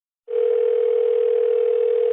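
A steady telephone tone heard down a phone line, one long tone with line hiss, starting a moment in and lasting about two seconds.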